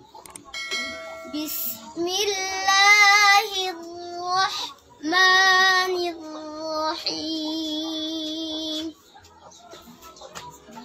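A young girl's voice chanting Quran recitation in the melodic tajweed style, drawing out each phrase into long held notes with a wavering vibrato. There are several phrases, the loudest about two and five seconds in, and the voice stops about nine seconds in.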